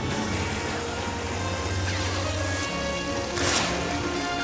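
Orchestral film score over the low steady hum of a lightsaber melting through a metal blast door. A short, loud burst of hiss comes near the end.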